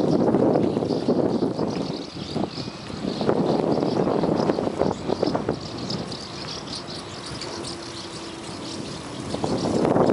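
Wind buffeting the microphone of a camera riding on a moving bicycle, mixed with road and tyre noise and a few small rattles from the bike. It eases off a little past halfway and picks up again near the end.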